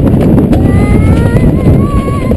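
Sled rumbling and rattling down a stainless-steel toboggan run: a loud, steady rumble with a few clicks near the start. A high drawn-out tone rises over it from about halfway through.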